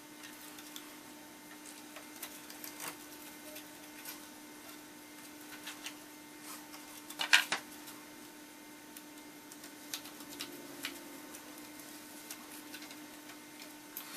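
Faint crinkling and ticking of a taped paper pattern being peeled off a scroll-sawn plywood panel and crumpled by hand, with a louder crackle about seven seconds in. A steady low hum runs underneath.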